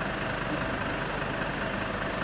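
Fire engine's diesel engine idling with a steady hum.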